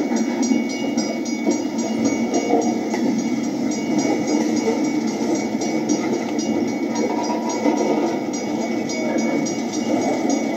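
Missouri Pacific welded rail train rolling along the track: a steady rumble of cars and wheels, with a faint, evenly repeating clicking.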